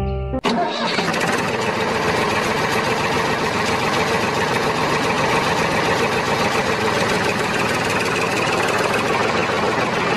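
Tractor engine sound running steadily. It starts abruptly about half a second in, as the background music cuts off, and holds an even level throughout.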